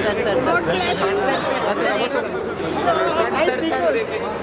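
A crowd of people talking over one another, a dense steady chatter of overlapping voices with no single clear speaker.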